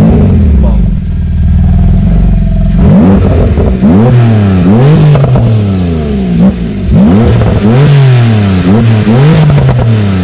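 Porsche 991.2 Turbo S twin-turbo 3.8-litre flat-six with a catless Techart exhaust idling steadily, then blipped hard again and again from about three seconds in, each rev rising and falling quickly, with sharp cracks from the exhaust between revs.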